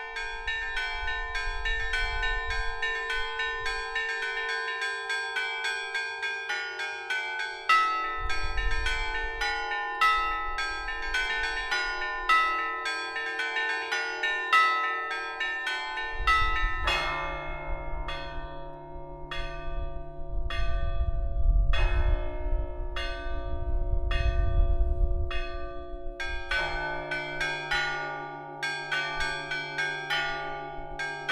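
Russian church bells rung by hand in the traditional Zaonezhye-style peal: rapid strokes on the small treble bells over repeating strokes of middle bells. Deeper bells join about halfway through, and the quick high strokes thin out for a while before picking up again near the end.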